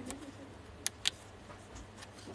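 Mode dial of an Olympus OM-D E-M1X being turned by hand: a few sharp detent clicks, two of them close together about a second in, with soft handling noise from the gloved hands at the start.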